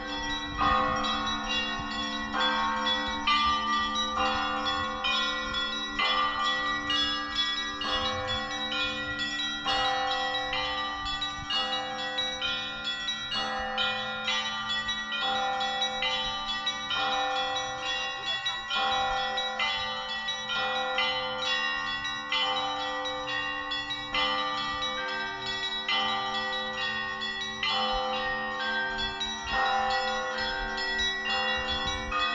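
Orthodox church bells ringing: several bells struck in quick, overlapping succession, over a low ringing tone that holds throughout.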